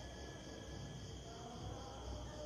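Faint insect chirring that pulses evenly about five times a second, over a low steady hum.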